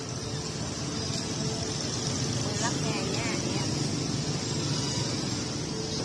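Steady background street noise: a low traffic rumble under a constant hiss, with faint voices about three seconds in.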